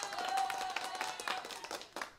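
Hands clapping in applause, a quick irregular run of claps, with a thin steady tone held under it for about a second and a half.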